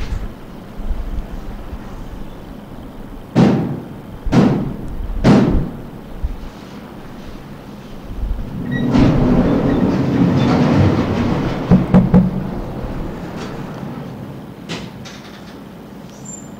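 Three loud thumps about a second apart, then a longer swell of rumbling noise with two sharp knocks near its peak, fading away.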